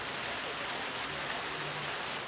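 Water from a row of fountain jets splashing into a shallow pool: a steady, even rush of water.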